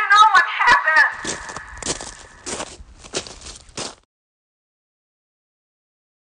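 A warbling, voice-like sound effect for about the first second, then a run of irregular footstep-like crunches that grow fainter and stop about two seconds before the end, leaving dead silence.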